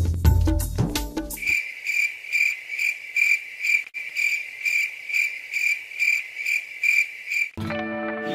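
Cricket chirping, a steady pulsing chirp about two or three times a second, starting abruptly after music ends about a second and a half in and cutting off just before the end, as an edited-in sound effect.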